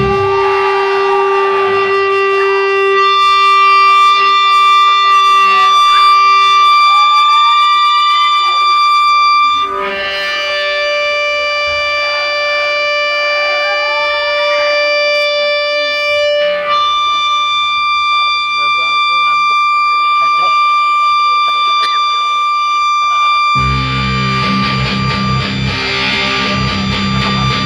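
Live metal band in a quiet interlude: the full band stops at the start, leaving long held electric guitar tones through effects, with some notes sliding in pitch. A couple of seconds before the end the full band comes back in with drums and bass.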